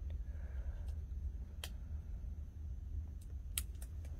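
Quiet room hum with a few faint, sharp clicks from fingers tying a knot in a rubber balloon, one about a third of the way in and two close together near the end.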